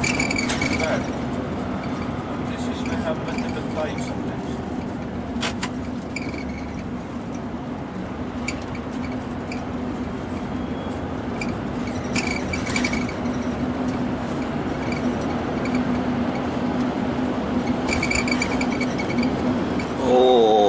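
A vehicle driving through a road tunnel, heard from inside the cabin: a steady low engine hum over constant road noise, with a few faint clicks.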